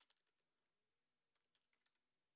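Near silence, with a few very faint computer-keyboard keystrokes.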